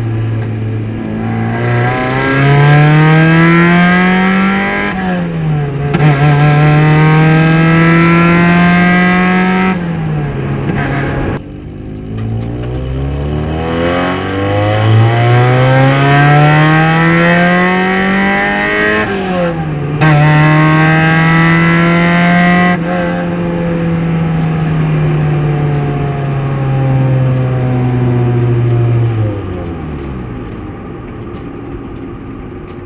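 1989 Mazda Miata's 1.6-litre four-cylinder engine pulling up through the gears with no clutch in use. The revs climb, then fall sharply at a clutchless shift about five seconds in and hold steady; around ten seconds they cut off, then climb again from low revs to another shift near twenty seconds, hold steady, and fall away near the end.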